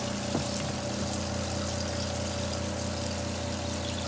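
Washing machine draining during a rinse cycle: a steady pump hum while rinse water pours from its drain hose into a utility sink.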